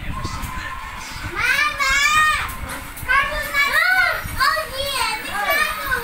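A young child's voice making wordless, very high-pitched calls that rise and fall, several in a row starting about a second and a half in.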